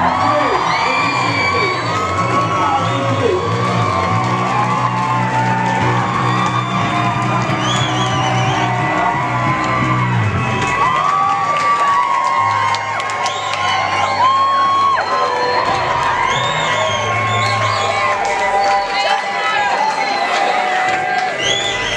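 Live rock gig crowd cheering, whooping and shouting over the band's held closing notes as a song ends. The band's sound thins out about halfway through, leaving mostly crowd noise.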